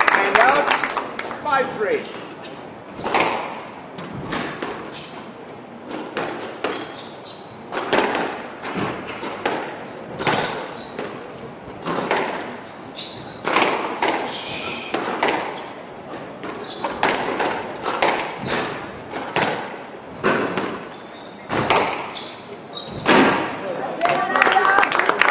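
A squash rally in an echoing court: the ball is struck by rackets and smacks off the walls in sharp hits about once a second.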